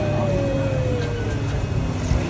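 Battery-powered Olaf bubble wand's small motor whirring as it blows bubbles. Its pitch climbs quickly and then slowly sags over steady background noise.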